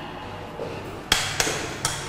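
Footsteps on a hard floor: three sharp knocks, the first about a second in, then two more within the next second.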